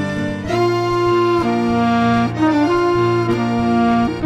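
Live instrumental band playing, with an accordion holding long notes that change about once a second, over keyboard accompaniment.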